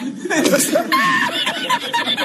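A man laughing hard, high and loud, in quick repeated fits.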